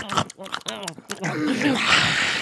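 A person's voice making wordless whining, groaning noises that bend up and down in pitch, ending in a loud breathy hiss near the end.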